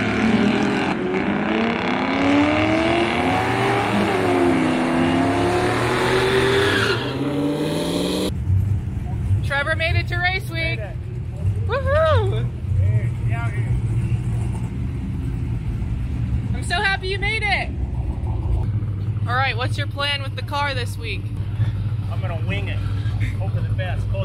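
Mazda RX2 drag car accelerating hard down the strip. Its engine pitch climbs, drops at a gear shift about four seconds in, climbs again, and cuts off about eight seconds in. After that there are voices over a steady low hum.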